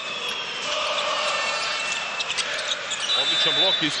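Live basketball game sound in an arena: a ball bouncing on the hardwood court and short high sneaker squeaks over steady crowd noise. A man's commentating voice comes in near the end.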